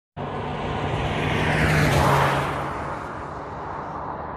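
A car driving past on the road, growing louder to its peak about halfway through and then fading as it goes away.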